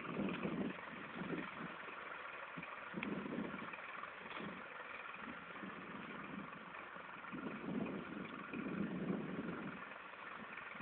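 Farm tractor engine running, its sound swelling and fading every few seconds.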